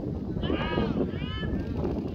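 Two short, high-pitched shouted calls from a person's voice, about half a second and a second in, over steady wind rumble on the microphone.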